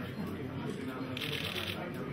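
Press cameras' shutters firing in a rapid burst about a second in, over faint background chatter.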